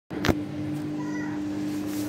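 Samsung WF80F5E0W2W front-loading washing machine in its final spin, its motor giving a steady whine. A sharp click comes right at the start.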